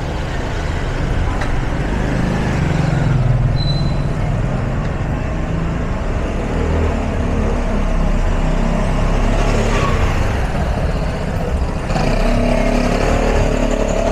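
Street traffic close by: car and motorbike engines running in a narrow street, a steady low rumble with an engine hum.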